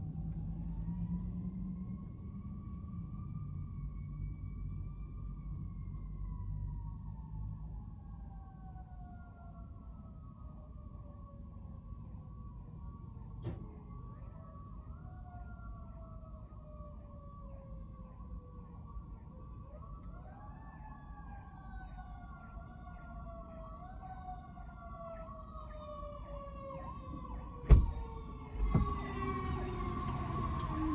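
A siren wailing: its pitch rises, then falls slowly, and rises again several times, over a low steady rumble. Two sharp thumps near the end.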